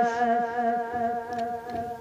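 A steady held tone with several overtones, slowly fading, in the pause between sung lines of a naat.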